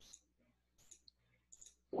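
A few faint, scattered clicks from computer input during a pause in the talk.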